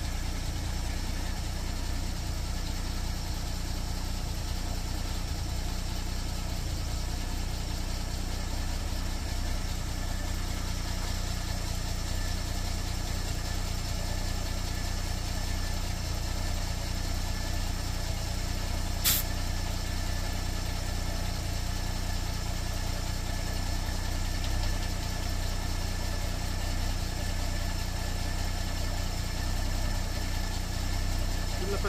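A motor running steadily, with a single sharp click about two-thirds of the way through.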